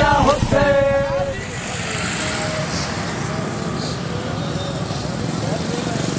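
Men chanting "Hussain" in a rhythmic mourning chant that breaks off about a second and a half in. After that, only steady street noise with traffic remains.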